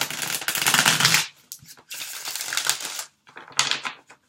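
A deck of tarot cards being shuffled by hand: three bursts of rapid card clicking, the first two about a second each and a shorter one near the end.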